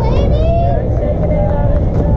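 Young players' voices shouting and calling across a softball field, high and drawn out, over a steady low rumble of wind on the microphone.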